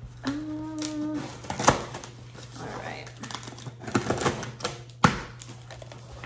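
A cardboard shipping box being opened: a knife slitting the packing tape and the flaps pulled apart, with scratchy cutting and tearing and a few sharp clicks and taps, the loudest about five seconds in. A short hummed note sounds near the start.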